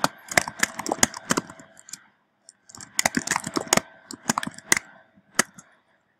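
Typing on a computer keyboard: two runs of quick key clicks with a short pause between them, stopping shortly before the end.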